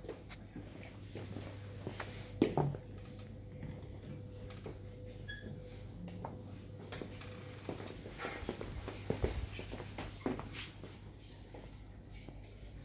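Chess pieces being picked up and set down on the boards: a few short knocks, the loudest about two and a half seconds in and another cluster around nine to ten seconds, over a steady low hum.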